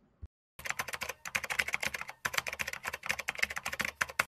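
A single click, then rapid computer-keyboard typing in three quick runs with short breaks, which stops abruptly.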